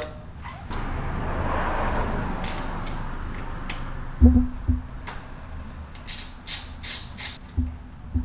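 A hand wrench working the front-sprocket bolts on a Honda Monkey: a rustling hiss at first, a low metal clunk about four seconds in, then a run of short sharp metallic clicks as the bolts are backed out.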